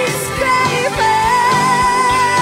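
Live pop band music with singing. Drums keep the beat under high vocal lines, and a long high wavering note is held from about a second in.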